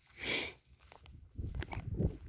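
A short breathy puff of noise near the start, then low wind rumble on the microphone from about two-thirds of the way in.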